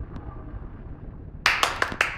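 A low steady room hum, then, about one and a half seconds in, a loud run of quick knocks and rustles as hands handle the laptop and its webcam.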